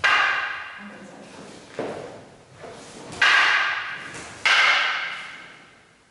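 Wooden bokken striking together: three loud clacks and a softer one, each ringing and echoing in the large hall.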